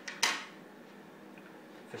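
A single sharp clack of a small metal instrument part being set down on a hard tabletop, followed by faint room hiss.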